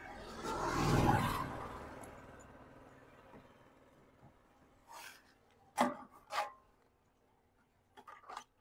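A truck's dirty air filter element being slid out of its canister housing, giving a few short rubbing scrapes in the second half. Before that, a rushing noise swells and fades over the first three seconds.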